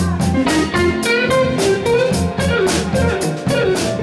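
Blues band playing: a guitar lead line with bent notes over a steady drum beat and a walking low bass.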